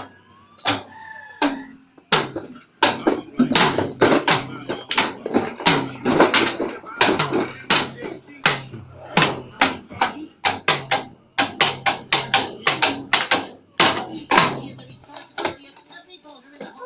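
Child's toy drum kit struck with light-up drumsticks: after about two seconds of quiet, a fast, uneven run of sharp hits, some with a short ring, that stops shortly before the end.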